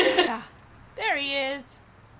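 A person's voice: the end of loud talk, then one short drawn-out vocal exclamation like "oh" about a second in, its pitch dropping and then holding level.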